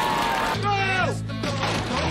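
A man's long, drawn-out yell that drops in pitch about a second in, with music and a steady low bass coming in underneath from about halfway.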